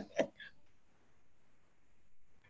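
A man's short laugh, a couple of quick breathy bursts in the first half second, then near silence with faint room tone.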